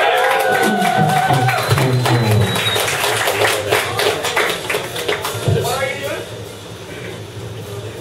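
Audience applauding, with voices calling out over the clapping; the applause fades about six seconds in.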